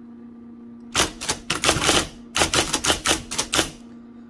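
1980 IBM Selectric III electric typewriter typing quickly, its Letter Gothic golfball typeball striking the cardstock in rapid runs. The strikes start about a second in, pause briefly, then run on again, over a steady hum.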